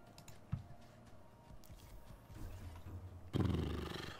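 Faint online slot game sounds under quiet room tone, with one sharp click about half a second in. A man's voice starts a drawn-out word near the end.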